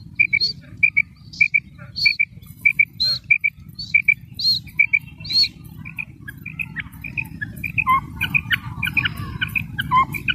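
Recorded calls of a female quail (batair) played as a hunting lure: short paired notes repeating about twice a second, with a higher rising note about once a second. From about six seconds in, the calling becomes busier, with more notes overlapping. A steady low rumble runs underneath.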